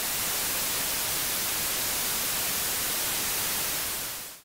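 Gray noise: randomized white noise processed through an equal-loudness curve so that all frequencies sound equally loud, playing as a steady, even hiss.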